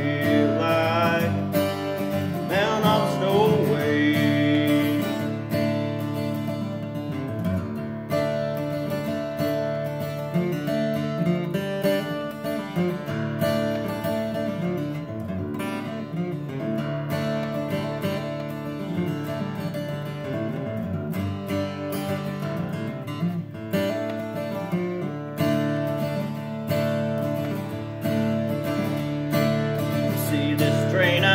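Steel-string acoustic guitar strummed and picked steadily in a country style, an instrumental break between verses. A sung note trails off in the first few seconds.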